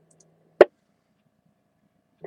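Near silence on a ham radio receiver between transmissions, broken by one short, sharp click about half a second in as the radio's squelch closes after a station unkeys.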